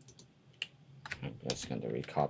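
Computer keyboard and mouse clicks: a few sharp, separate taps through the first second and a half. Near the end, a low voice starts up with no clear words.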